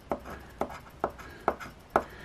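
A coin scraping across a scratch-off lottery ticket in short strokes, about two a second, five in all. The latex coating is hard and stubborn to scratch off.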